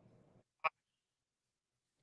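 Audio dropout on an internet video call: dead silence, broken once about two-thirds of a second in by a very short clipped fragment of a man's voice. The gap fits the guest's connection cutting out.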